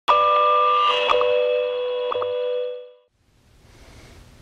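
Short electronic musical sting for a logo ident: a held chord of bright chime-like tones with a few clicks, fading out about three seconds in, followed by faint room tone.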